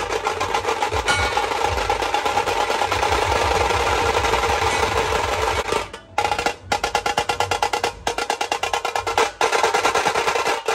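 Dhol-tasha ensemble playing: a row of tashas struck with thin sticks in a fast, continuous roll over deep dhol beats. The drumming breaks off suddenly about six seconds in, then comes back in a rhythmic pattern with short pauses.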